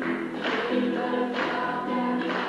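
Gospel choir singing held chords over music, with a regular beat about once a second.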